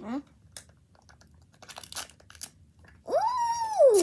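Light crinkling of a Mini Brands capsule's plastic wrapping being peeled by hand, in scattered short crackles through the middle. About three seconds in, a child's voice rises into a long held sound.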